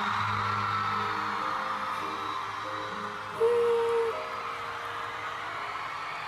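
A live pop ballad ending on long held notes, a male voice with backing music, while a crowd of fans cheers. A louder held note comes in about three and a half seconds in.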